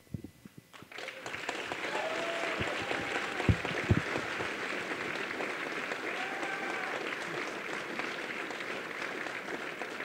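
Audience applauding. The clapping starts about a second in, holds steady and eases slightly near the end.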